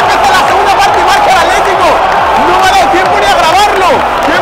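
A packed football stadium crowd shouting and cheering a goal just scored, many voices at once with no let-up.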